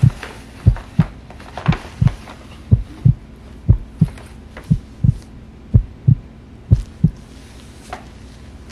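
Heartbeat sound effect: pairs of deep thumps, lub-dub, about one beat a second, stopping about a second before the end.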